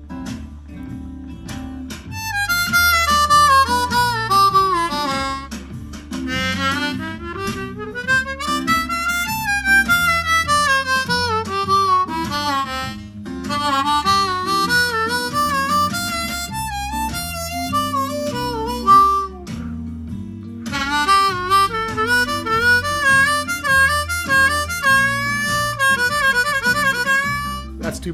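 C diatonic harmonica played in second position (key of G), improvising blues triplets: quick three-note figures running down and up the low holes, with draw bends. The phrases start about two seconds in, with short breaks around the middle and near two-thirds of the way through.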